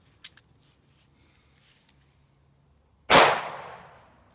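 A single pistol shot from a Yugoslav Tokarev firing 7.62x25 mm, about three seconds in, with its echo trailing off over most of a second. A short click comes about a quarter second in.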